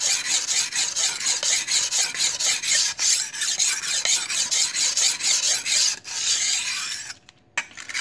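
Steel knife blade stroked rapidly back and forth on the fine side of a Diamond-brand (Tra Phet) whetstone: a gritty scraping at about four strokes a second that stops about seven seconds in. The stone bites the steel well without raising slurry.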